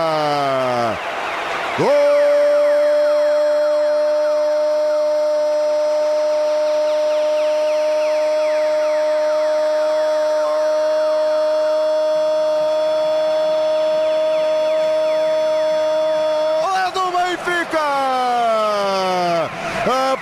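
Radio football commentator shouting "Benfica!" with his voice falling, then holding one long goal cry on a single high note for about fifteen seconds. Near the end the cry slides down in pitch in breaking steps. It is the call of a penalty goal going in.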